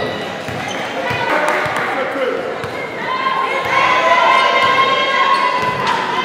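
Basketball dribbled on an indoor court, with short bounces echoing in the hall and voices around it. From about three seconds in, a steady held tone joins and becomes the loudest sound.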